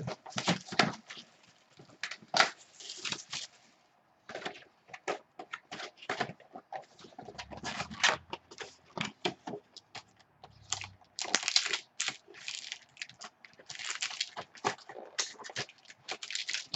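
Hands opening a sealed trading-card box and its foil card packs: a run of sharp clicks and crinkling rustles of cardboard and wrappers, with denser tearing and crinkling near the end as the box's cardboard tear strip is ripped off.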